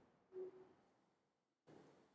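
Near silence in a quiet room, broken by a few faint soft sounds. The loudest, about half a second in, is a brief low tone.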